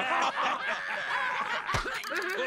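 Several cartoon characters' voices laughing and chuckling together.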